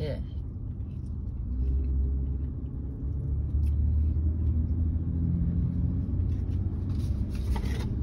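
Car engine and tyre rumble heard from inside the cabin as the car drives slowly: a steady low rumble that swells slightly about a second and a half in.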